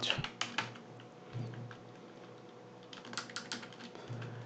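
Computer keyboard keystrokes: a quick run of key clicks just after the start, a pause, then another run about three seconds in.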